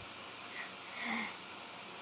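Quiet room tone with one faint, short breath sound about a second in.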